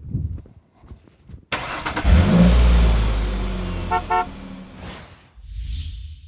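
A car sound: a sudden rush of noise about a second and a half in, then a loud low rumble that fades over the next few seconds. Two short horn-like toots come about four seconds in.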